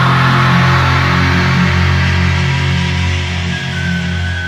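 Loud heavy rock music with guitar, dense low notes held steadily.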